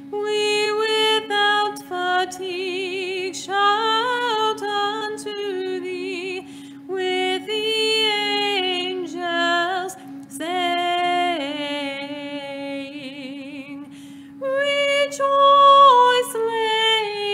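Solo liturgical chant in an Orthodox Vespers service: one voice sings an ornamented hymn line with vibrato and short breaks between phrases, over a steady held drone note.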